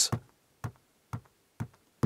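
Short sharp taps, evenly spaced at about two a second. Each one is a sound cue that steps the sound-to-light LED box on to its next preset animation frame.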